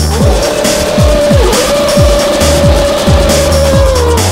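A Formula 1 car spinning doughnuts, its engine held at steady high revs with one brief dip about one and a half seconds in, and tyres squealing. Drum and bass music with a heavy falling kick drum plays over it.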